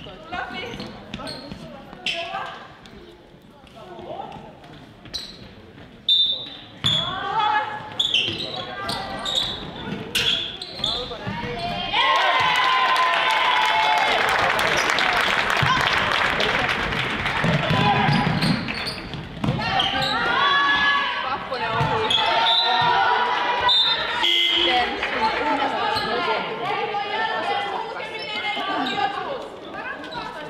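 Girls' basketball game in an echoing school gym: the ball bouncing on the wooden floor, with players and spectators calling out. A loud stretch of shouting and cheering comes about halfway through.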